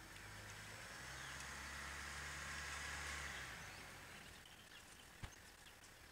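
A faint, distant engine hum that swells and then fades over about three and a half seconds. A single sharp click comes near the end.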